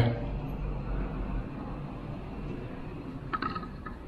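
Steady low rumble of background noise, with a brief faint sound about three and a half seconds in.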